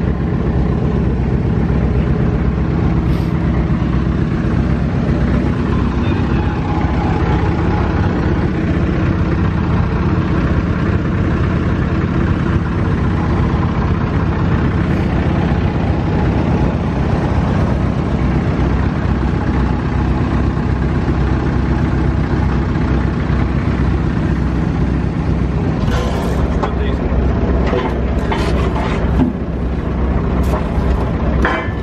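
A vehicle engine idling steadily, with a few sharp knocks near the end.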